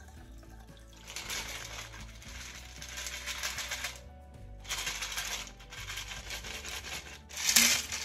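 A shaken margarita poured from a clear plastic cocktail shaker into a glass, ice clinking and rattling in the shaker. It goes in two pours with a short break between them, with louder rattles of ice near the end. Soft background music.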